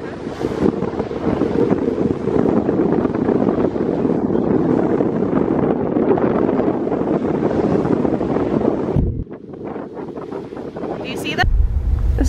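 Wind buffeting the microphone on a ferry's open deck: a steady, heavy rushing over the ship's low rumble and the sea. It drops abruptly about nine seconds in. Near the end it gives way to a low steady hum indoors.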